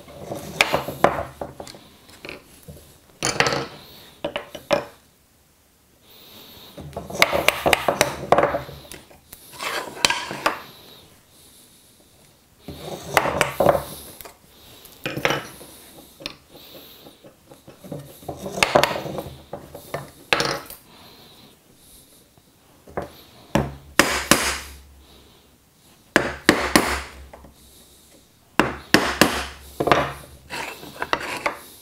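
Bench chisel struck with a mallet, chopping waste out from between hand-cut dovetails in walnut: short clusters of rapid blows every two to three seconds.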